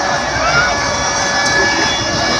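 Loud, steady crowd din from a packed pool: many voices shouting and calling at once, with a few shouts rising above the general noise.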